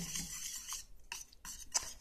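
Wire whisk stirring a thick banana and sweet-potato puree in a metal pan: a soft scratchy rasp with a few sharper ticks of the whisk against the pan in the second second.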